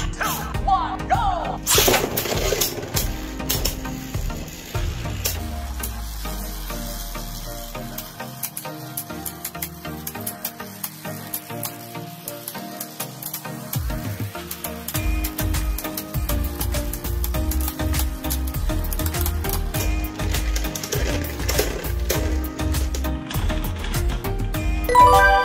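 Beyblade Burst spinning tops grinding and clattering against each other on a plastic stadium floor, a dense stream of rapid clicks and a sizzling scrape over backing music, until one top spins down and stops.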